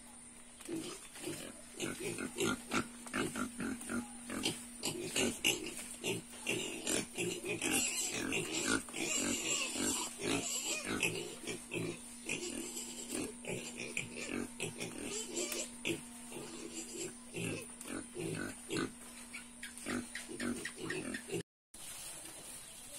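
Pigs grunting over and over in short, irregular calls, busiest in the first half.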